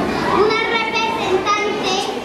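Children's voices talking and calling out over one another, high-pitched and not clearly in words.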